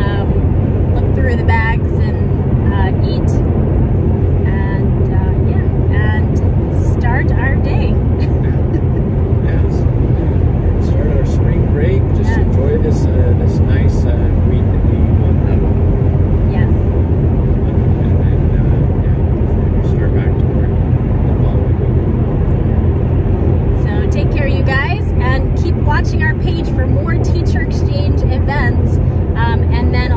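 Steady low road-and-engine rumble inside the cabin of a moving car, with voices talking over it now and then.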